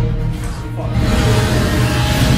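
Music with strong bass played loud through a Bose home-cinema speaker system being demonstrated.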